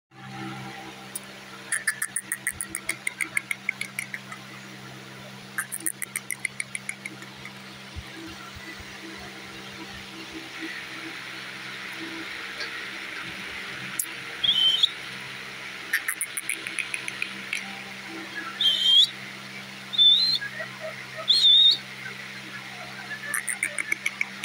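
Rose-ringed (Indian ringneck) parakeet calling. It gives several rapid chattering trains of ticks, then, in the second half, four short, loud, whistle-like calls.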